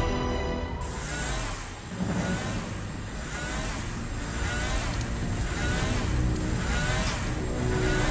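A rig cutting into the ice with a green beam, as film sound: a steady hiss, starting about a second in, with a short rising whine repeating roughly once a second, over the film's music.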